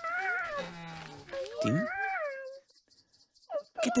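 A high, wavering whimpering cry, like a small dog's, in a puppet character's voice; it is the cry of someone shut in behind a door he cannot open. It rises and falls over about two and a half seconds, then stops.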